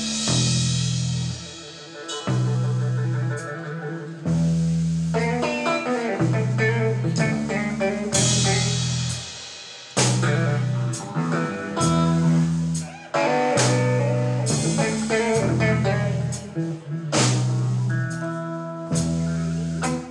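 A blues trio playing live: semi-hollow electric guitar over electric bass and drum kit, with cymbal crashes every second or two. The singer's voice comes in near the end.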